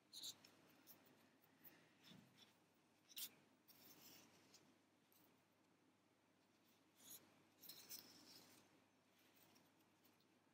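Near silence, with a few faint, brief scratching and rustling sounds of a yarn needle and yarn being drawn through crocheted fabric, around three seconds in and again around seven to eight seconds in.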